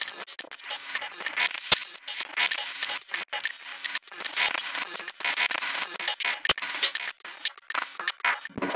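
Glitch electronic music: a dense, shifting crackle of tiny digital clicks over a thin high whine, broken by two sharp, louder clicks, one a little under two seconds in and one past six seconds.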